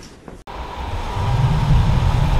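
Outdoor ambient noise that starts abruptly about half a second in, after near-quiet: a steady hiss with a low rumble that swells after about a second.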